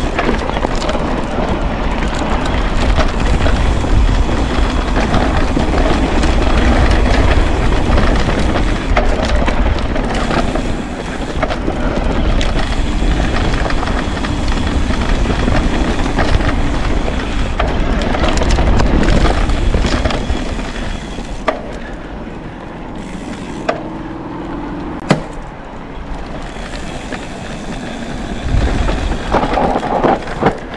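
Norco e-mountain bike riding fast down a dirt singletrack: wind buffeting the helmet-camera microphone over tyres rolling on dirt and the bike rattling over the bumps. The rumble eases a little in the second half, where a few sharp knocks stand out.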